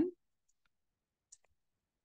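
A few faint, scattered computer keyboard clicks as text is typed, the clearest just over a second in, with near silence between them.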